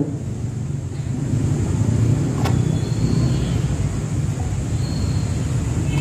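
Steady low rumble of background noise, with a faint click about two and a half seconds in.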